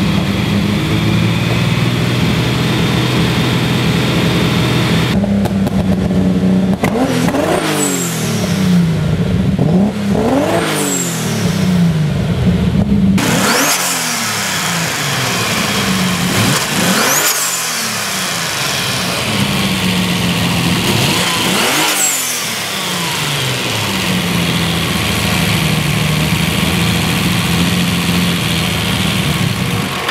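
Turbocharged BMW S38 straight-six (Garrett turbo) idling, then blipped five times, each rev climbing and dropping back to idle. A faint high whistle rises and falls with each blip.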